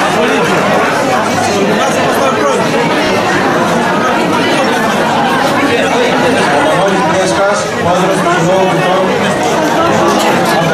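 Many people talking at once in a large room: a loud, steady babble of overlapping conversation.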